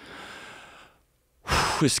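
A man's breath close to a studio microphone, a soft airy rush under a second long, followed by a short silence before he speaks again.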